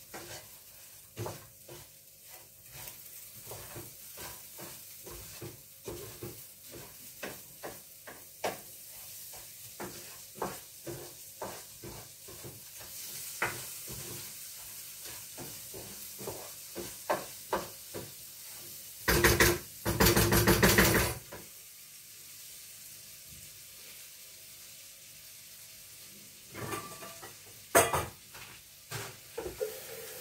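Spoon stirring rice and vermicelli as they fry in margarine and oil in a granite pan: a steady sizzle with frequent clicks and scrapes of the spoon on the pan. About two-thirds through, a louder rasping noise lasts about two seconds.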